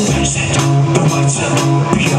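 Rock band playing live without vocals: electric guitar and bass guitar sustaining chords over a steady drum beat.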